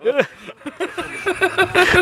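A man's voice chuckling in short, evenly spaced bursts, with a brief rustle near the end.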